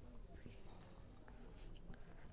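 Near silence: room tone, with a brief faint hiss about one and a half seconds in.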